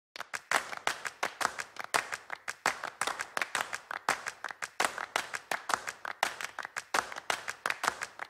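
A rapid, uneven run of sharp clicks, about five a second, with no break.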